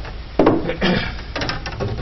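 A man coughing, two short coughs about half a second apart in the first second, followed by a few light clicks.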